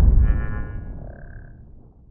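Logo-intro sound effect: the deep tail of a cinematic boom fading out, with a short bright shimmering chime and then a single high ping about a second in, as the title glints.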